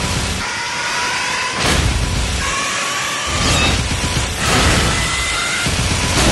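Horror film trailer score and sound design: a dense low rumble under sustained high tones, swelling a few times.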